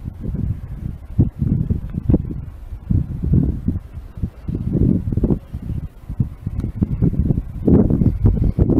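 Strong gusting wind of a snowstorm buffeting the microphone: loud, irregular low gusts that swell and fade every second or so.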